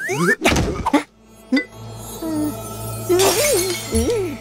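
Cartoon music and sound effects: a quick rising whistle and a clatter of crashes in the first second, then a held low note with short pitched sounds that waver up and down.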